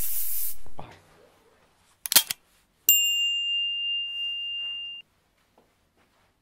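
Edited logo sound effects: a high hissing swoosh that fades out in the first second, a short sharp hit about two seconds in, then a high bell-like ding that holds steady for about two seconds and cuts off suddenly.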